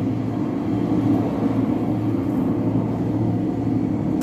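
A steady low rumble with no change or break.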